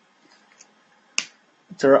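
A single sharp click about a second in, over otherwise quiet room tone, followed near the end by a voice starting to speak.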